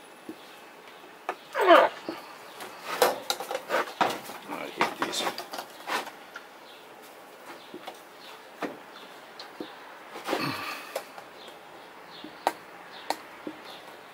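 A brief laugh, then scattered clicks, taps and knocks of metal cans being handled on a table and a plastic cap being worked off one of them, thickest in the first half.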